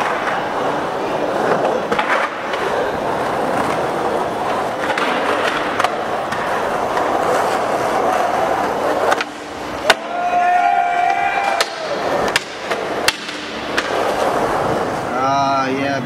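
Skateboard wheels rolling over concrete skatepark transitions in a steady rumble, with sharp clacks from the board and trucks every few seconds.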